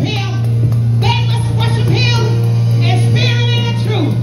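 Live church music: a low bass note held steadily on a keyboard or organ, with a woman's voice singing in short phrases about once a second through the microphone.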